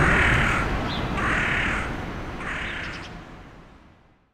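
A corvid cawing three times, about a second apart, over a low traffic rumble; the sound fades out near the end.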